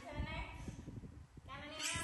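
Baby monkey giving short, whiny, bleat-like calls, with low knocks and handling noise in the first second.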